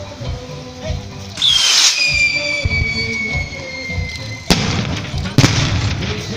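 Fiesta firework rocket (cohete) going off: a rush of noise at launch, then a whistle that slides slowly down in pitch for about two and a half seconds, followed by two sharp bangs about a second apart near the end.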